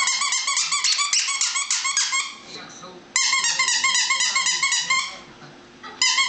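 A small pet's high-pitched, rapidly pulsing squeaky whine, heard in two runs of about two seconds each, the second starting about three seconds in.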